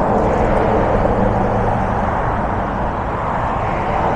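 Road traffic heard from the roadside: a steady rushing noise with no break.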